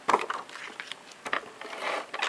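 ATG adhesive transfer tape gun being run across paper to lay down tape, with light scraping, paper handling and a few soft clicks.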